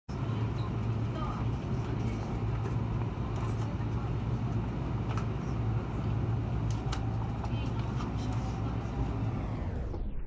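Yamanote Line train running, heard from inside the carriage: a steady low rumble with scattered short clicks and rattles.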